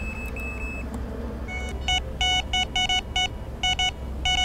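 Fox Mini Micron X carp bite alarm sounding through its cone speaker: a run of short, crisp electronic beeps starting about one and a half seconds in, coming in quick irregular groups, the tone an angler hears as bite indication.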